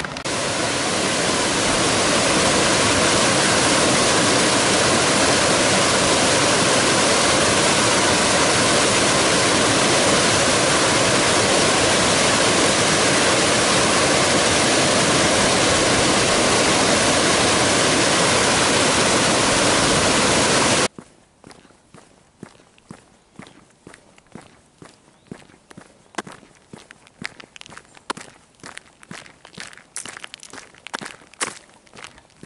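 Loud, steady rush of white-water river rapids that cuts off suddenly about two-thirds of the way through. Then quieter, irregular crunching footsteps on a gravel path.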